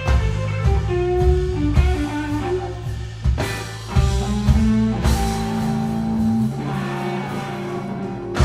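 Live blues-rock trio playing an instrumental passage: electric guitar lines over bass guitar and a drum kit, with no vocals.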